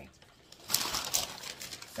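A shopping bag rustling and crinkling as someone rummages through it, starting about a second in and coming in uneven bursts.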